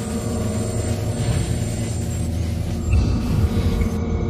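A steady low rumbling drone with sustained held tones layered above it: the documentary's sound-design bed, with a slight swell about three seconds in.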